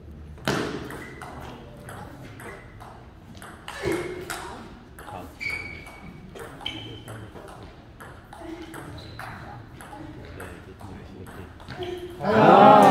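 Table tennis rally: the ball clicking back and forth off paddles and table in a quick irregular series, with a few louder hits, one near the start and one about four seconds in.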